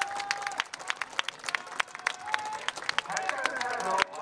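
Sparse crowd applause at a ballpark, many separate hand claps, for a batter who has just reached first base. Voices come through over it, strongest near the end.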